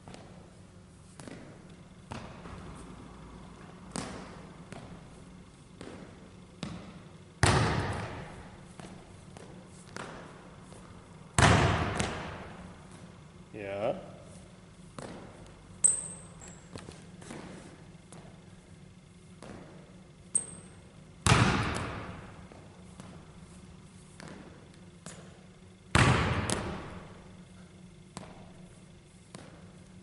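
Basketball bouncing on a hardwood gym floor: four loud single bounces several seconds apart, each ringing on in the hall's echo. Between them come lighter footfalls and a couple of short, high sneaker squeaks.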